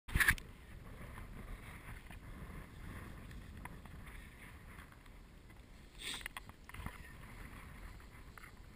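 Steady low rumble of wind on a head-mounted camera's microphone, with a few small clicks and knocks from handling, a sharp knock at the very start and a louder rustle about six seconds in.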